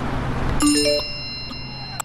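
Advert sound effects: a swelling whoosh, then about half a second in a bright chime of three quick rising notes over a ringing high tone that fades away.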